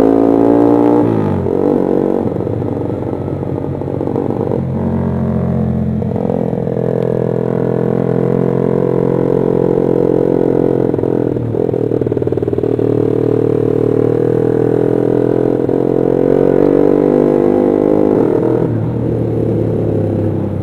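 Honda CB150R motorcycle engine running steadily under way, heard from the rider's position, its pitch shifting a few times as the speed changes.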